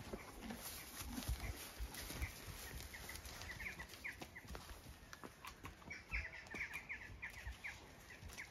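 Faint birds chirping in short, quick high runs, once about halfway and again later, over low rumble and a few soft knocks.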